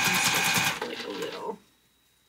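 Electric sewing machine stitching Petersham ribbon binding onto a corset edge, running at a steady, evenly pulsed speed, then stopping under a second in.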